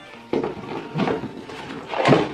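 Cardboard jigsaw-puzzle boxes being handled: lifted, slid and set down, with a few light knocks of cardboard on cardboard. Light background music under it.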